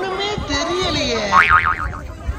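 Cartoon "boing" spring sound effect, a loud wobbling tone about one and a half seconds in, following a short snippet of a voice.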